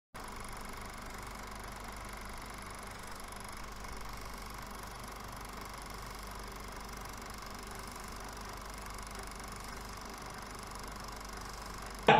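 A steady hiss with a faint hum, unchanging throughout, with no speech or music.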